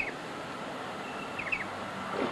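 Short bird calls: a quick pair of high chirps at the start and again about a second and a half later, over a steady background hiss of outdoor ambience.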